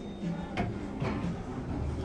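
Double-speed sliding stainless-steel doors of a Kone MonoSpace lift opening on arrival, with a sharp click about half a second in.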